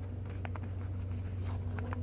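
A paper lottery ticket being folded and creased by hand: a few short crinkles and ticks of paper over a steady low hum.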